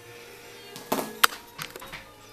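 Soft background music, with a quick cluster of four or five sharp clicks and knocks about a second in from handling on a metal-edged grooming table, one louder knock among them.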